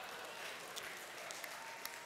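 Faint, scattered applause from a congregation, a light patter of clapping.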